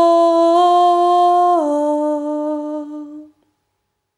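A woman's voice humming one long held note in a mantra chant. The note drops a step in pitch about one and a half seconds in and fades out after about three seconds.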